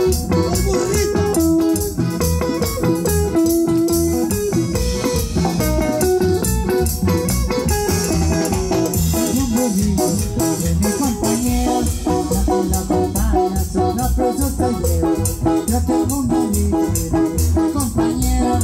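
Live band playing an instrumental dance tune: a plucked guitar melody over bass and drums with a steady, even beat.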